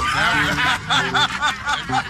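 A man laughing loudly in quick repeated bursts.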